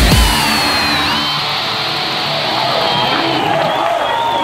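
A live rock/drum-and-bass band's heavy music, drums and bass, stops abruptly about a quarter second in. A crowd then cheers and whoops, with high tones gliding downward ringing over it.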